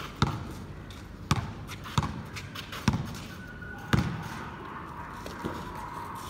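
A basketball bouncing on a concrete court: five sharp bounces about a second apart.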